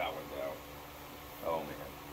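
Steady hum of barn circulating fans, with two short, faint voice sounds, one at the start and one about a second and a half in.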